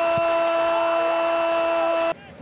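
A male football commentator's long held goal shout, one sustained note at an unchanging pitch.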